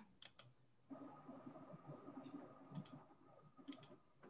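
Near silence with a few faint computer mouse clicks, a pair about a quarter second in and a few more near the end, over a faint steady hum that starts about a second in.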